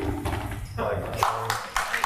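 Footsteps of hard-soled shoes on a stage floor, irregular clicks and knocks, with a few short words spoken about halfway through.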